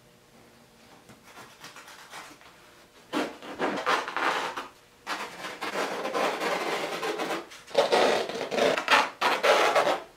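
A knife cutting through raw canvas along a wooden stretcher frame: long rough rasping strokes, several in a row, starting about three seconds in after a few faint rustles.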